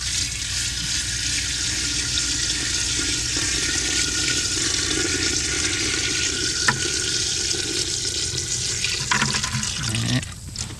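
Water poured in a steady stream from a bucket into the inner steel ring of a double-ring infiltrometer, splashing onto a straw energy breaker and the water pooling over the soil. The pour slackens near the end.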